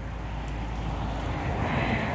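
Road traffic noise, a steady rumble that swells slightly near the end.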